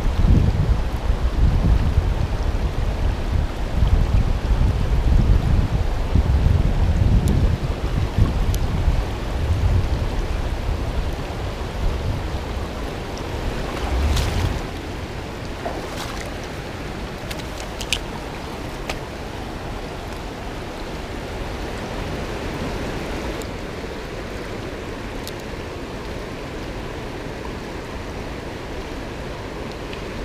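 A shallow river rushing over rocks, giving a steady hiss of moving water. Through the first half, wind buffets the microphone with a gusty low rumble, which dies away about halfway, leaving the water alone apart from a few light clicks.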